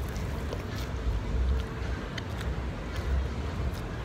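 A person chewing a bite of grilled sandwich, with a few faint crunches and mouth clicks over a steady low background rumble.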